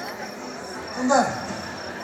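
Crickets chirping in a fast, even pulse over background crowd noise. About a second in, a person gives a short, loud shout.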